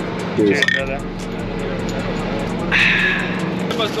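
A glass soda bottle has its cap pried off on a wall-mounted bottle opener: a short sharp click, over a steady low hum.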